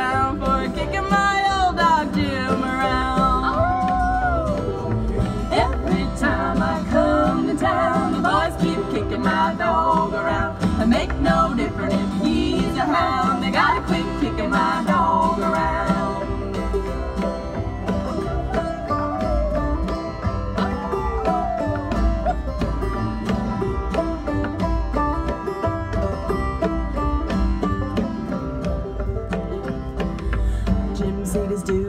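Acoustic bluegrass string band playing an instrumental break between verses, with picked guitar and banjo over upright bass. A sliding lead melody carries the first half, then the picking goes on with less melody.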